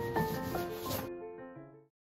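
Background piano music, its notes fading out near the end. Over it for about the first second, a hand rubbing a paper shipping label flat onto a cardboard box, a dry rubbing hiss that stops suddenly.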